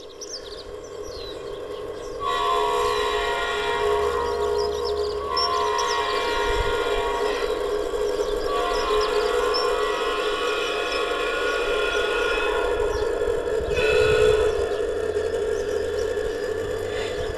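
Onboard sound unit of a G-scale model diesel locomotive playing a horn in long, loud blasts with short breaks, over a low rumble of the running train.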